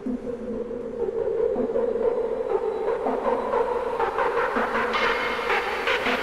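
Hard, industrial techno track in a build-up: a sustained drone over a pulsing low hit, getting louder about a second in. A fast, clattering rhythmic pattern comes in higher up after about four seconds and thickens toward the end.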